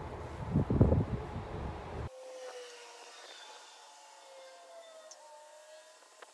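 Hands rustling and knocking a plastic bag of potting mix and a plant pot during repotting. About two seconds in, this drops to a quiet stretch with a faint, slowly sliding hum.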